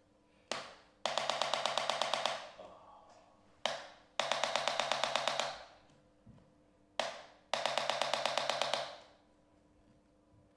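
Handheld electric chiropractic adjusting instrument pressed against the lower back, firing three bursts of rapid taps, about ten a second and each lasting a little over a second. Each burst is preceded by a single sharp click about half a second before it.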